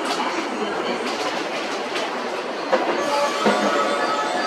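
JR West 287 series electric train pulling slowly into the platform, its wheels clicking over rail joints and points. A steady whine sets in about three seconds in, with a couple of louder knocks.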